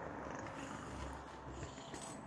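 Domestic cat purring steadily while being stroked by hand.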